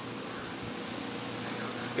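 Steady background hum with a low hiss, like a fan running in the room.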